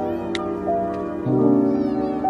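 Soft background piano music, with a sharp click about a third of a second in and faint high, arching chirp-like glides near the end.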